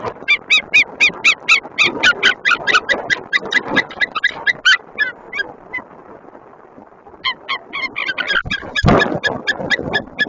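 White-tailed eagle calling close to the microphone: a rapid series of short, loud calls, about five a second, that slows and breaks off around the middle, then a second series starts. A brief rush of noise, like a wingbeat or gust on the microphone, cuts in near the end.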